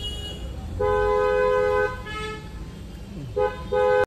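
Two-tone car horn honking: one long honk of about a second, then two short honks near the end.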